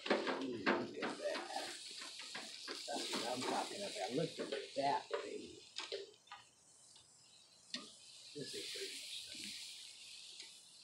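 Pork chops sizzling on an open barbecue grill, with sharp clicks of metal on the grate as the meat is handled. Low, indistinct talking runs over the first half.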